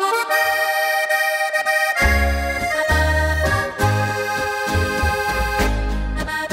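Accordion playing a folk tune, alone at first. About two seconds in, a double bass (berda) and rhythm guitar join with a steady beat.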